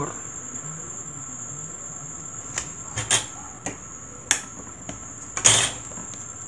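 Light clicks and taps of paper and craft scissors being handled on a cutting mat, with a louder brief rustle near the end as the decorative-edge scissors are picked up. A faint steady high whine runs underneath.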